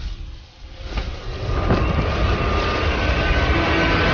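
Cinematic sound effects from an animated fantasy battle: a deep, steady rumble that drops away briefly just after the start, then swells back up, with faint high tones running over it.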